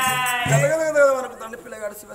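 A man's voice drawing out a long held vowel that ends about half a second in, then a shorter falling sung phrase, in the chanted style of oggu katha storytelling.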